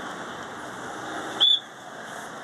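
Road traffic noise from passing vehicles, with one short, loud high-pitched beep about one and a half seconds in.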